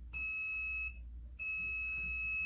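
Digital multimeter in continuity mode beeping twice with a steady high tone: a beep under a second long, then a longer one starting about a second and a half in. The beeps mean the probes have found a direct short to ground on a motherboard MOSFET's legs.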